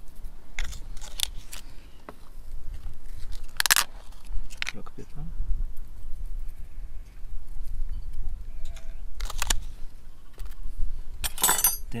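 Wind rumbling on the microphone, with scattered short clicks and rustles from small glass cups of seasoning being handled and sprinkled over a bowl, and a longer scraping rustle near the end.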